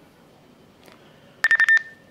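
Handheld two-way radio giving a short, high beep with sharp clicks about one and a half seconds in, as its push-to-talk key is pressed before a reply; before that only faint room tone.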